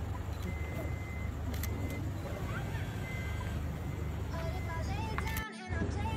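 A minivan idling, heard as a low steady rumble, under the voices of people gathered around it. The voices grow louder from about four seconds in, and all sound cuts out for a moment shortly before the end.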